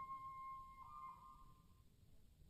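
The last held high note of an orchestral passage, a single thin tone fading away until it dies out near the end, leaving near silence.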